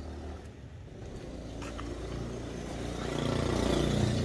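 A vehicle engine running at low speed, its sound growing steadily louder through the second half.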